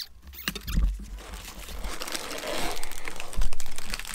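A cardboard LEGO set box being opened and its plastic bags of parts pulled out: crinkling and rustling plastic with many small clicks, and dull thumps about a second in and again near the end.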